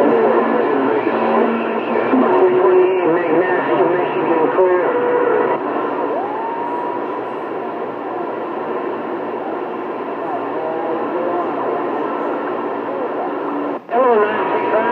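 CB radio receiving distant skip stations on channel 28: garbled, fading voices through static, with the thin, narrow sound of the radio's speaker. About six seconds in, a whistle slides up and holds on a steady tone.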